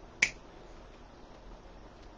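A single sharp snip about a quarter second in, as the stem of an artificial fall leaf pick is cut.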